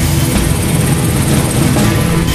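Motorcycle engine of a tricycle running close by, a steady rumble, with festival music still heard behind it.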